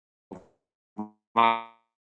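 Three brief wordless sounds in a man's voice, hesitation noises with no words. The third and loudest comes about one and a half seconds in and fades out, and there is dead silence between them.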